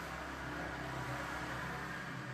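Steady low hum with a faint even hiss: the room's background noise, with no other event standing out.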